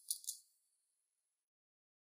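Faint, brief rustle of paper as a letter and sheets are pulled out of a small wooden cabinet, over within about half a second.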